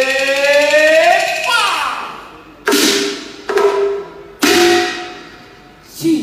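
A male voice in Cantonese opera style holds a long phrase that climbs steadily in pitch and stops about a second and a half in. Then three sharp percussion strikes about a second apart, each ringing out like a gong and cymbal.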